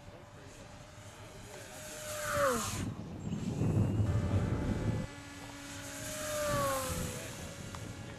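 RC model plane's motor and propeller whining as the plane makes two fast passes, the pitch dropping each time it goes by. A burst of low wind rumble on the microphone sits between the passes and cuts off abruptly.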